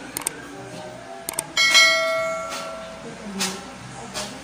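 Subscribe-button sound effect: a few mouse clicks, then a bell chime struck once about one and a half seconds in, ringing out and fading over a second or so.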